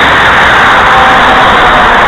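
A heavy truck driving past on the street, its engine and tyre noise loud and steady.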